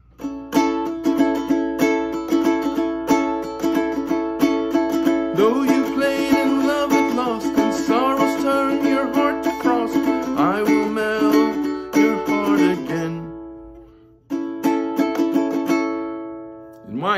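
Ukulele strummed in a steady repeating pattern, with a man singing the verse over it from about five seconds in. The playing stops for about a second near the end, then the strumming starts again.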